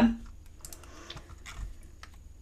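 A few light, scattered clicks and taps on a computer keyboard.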